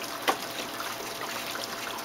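Water trickling as an SM100 algae scrubber drains with its pump switched off. A single sharp click comes about a third of a second in.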